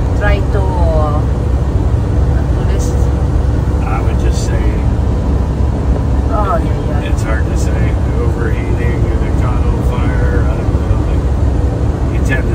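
Steady engine and road rumble inside the cab of a vehicle driving at highway speed, with brief bits of low voice heard over it.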